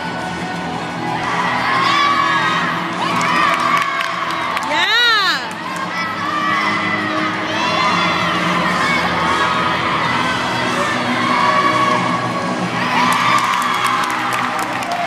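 A crowd cheering and shouting, with many voices overlapping throughout and one loud, high cheer that rises and falls about five seconds in.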